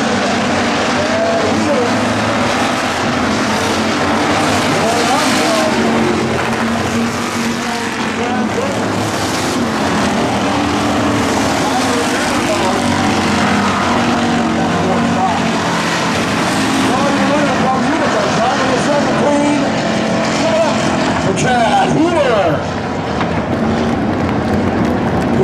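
Hobby stock race car engines running on a dirt oval, their pitch rising and falling as the cars accelerate and pass.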